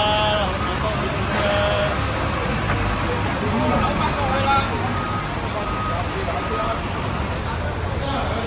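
Street traffic ambience: a steady low rumble of bus and vehicle engines, with people talking over it.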